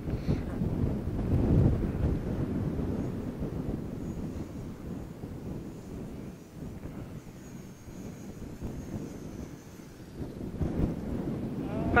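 Gusty wind buffeting the microphone, loudest in the first couple of seconds and easing later. A faint high whine comes and goes in the middle, from the small electric motor of the mini F4U Corsair RC plane as it comes in to land.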